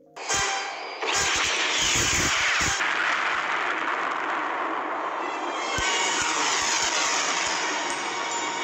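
Edited-in sound effect with music: a dense rush of noise that starts a moment in and swells about a second in, with a few low thumps underneath.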